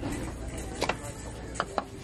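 Three light, sharp knocks of a wooden lid against a glass candle jar as the lid is lifted off, over a low steady store background.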